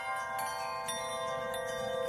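Soft background music in a pause of the narration: a held, chime-like chord of several steady ringing tones, with a few new tones entering partway through.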